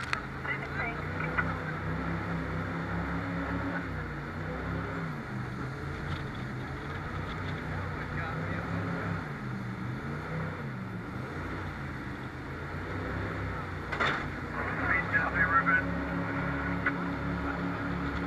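Jet boat engine running hard under way, its pitch rising and falling with the throttle. About fourteen seconds in there is a sudden sharp sound, then a moment of louder, choppier noise.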